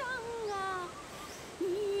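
A woman's voice singing a slow, drawn-out melody on its own: one long note sliding downward, a short gap, then a new note beginning near the end.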